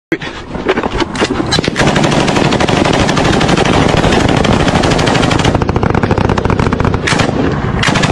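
Automatic machine-gun fire: a few separate shots in the first couple of seconds, then a long, dense stream of rapid fire that settles into a fast, even rhythm of shots after about five and a half seconds.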